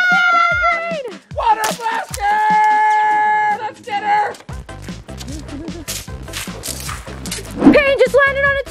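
A high-pitched shriek held for about a second, then a long, steady high cry held for about two seconds, giving way about halfway through to background music with a steady beat.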